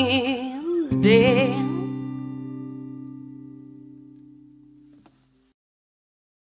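A woman's voice holding the last sung note with vibrato over guitar; a final chord struck about a second in rings out and fades away over about four seconds, then cuts off.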